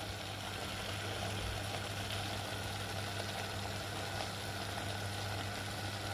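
Beetroot curry in coconut milk simmering in a clay pot, a soft steady bubbling, over a constant low hum.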